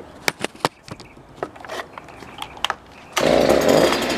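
A few sharp clicks of the Stihl BG 86 leaf blower being handled, then its two-stroke engine comes in suddenly about three seconds in and runs loud and steady on its newly fitted carburetor.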